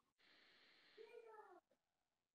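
Near silence, broken about a second in by one faint, brief call that falls in pitch, like an animal's call.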